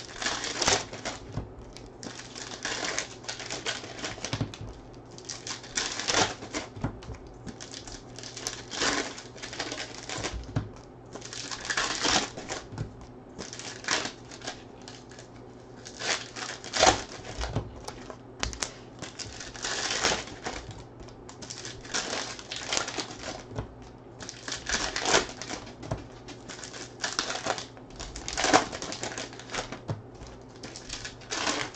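Foil trading-card pack wrappers crinkling and being torn open by hand, with cards handled and shuffled between them, in irregular bursts of rustling about once a second.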